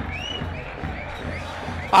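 Football stadium crowd in the stands, a steady background din of fans singing and chanting.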